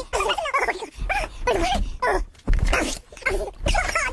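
Sped-up human voices giving short, high-pitched yelping cries and shouts, several a second, with a low thud about two and a half seconds in.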